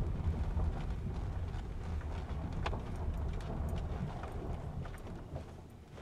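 Steady low rumble of a car's engine and tyres heard from inside the cabin while driving, with a few light knocks. It eases off near the end.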